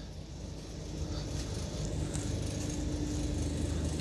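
Low, steady hum of an idling diesel coach engine heard inside the coach, with a faint steady whine joining about a second in.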